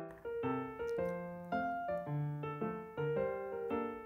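Background piano music: a steady melody of struck notes and chords, a new note about every half second, each fading before the next.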